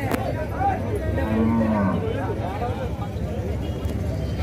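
A zebu bull lowing once, a single call of under a second about a second in, held level and then dropping in pitch at the end, over the murmur of voices.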